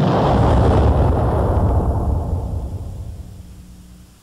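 Cartoon explosion sound effect: a loud blast with a deep rumble that fades away over about three seconds, the comic result of an explosive sneeze.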